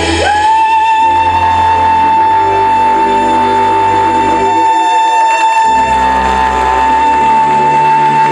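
Soprano singing live, leaping up just after the start to one long high note held with vibrato, over orchestral accompaniment.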